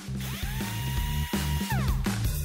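Compass cordless drill driving a screw into a wooden post: the motor whine climbs quickly, holds one steady pitch for about a second and a half, then winds down near the end. Background music with a steady beat plays underneath.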